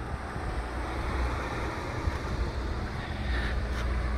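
Outdoor background noise: wind rumbling on the microphone over a steady low hum, with no distinct events.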